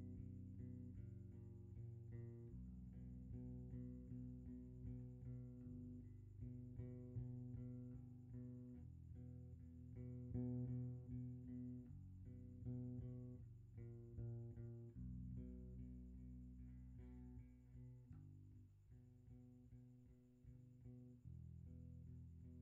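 Four-string electric bass guitar played solo, a line of low sustained notes that change every second or two.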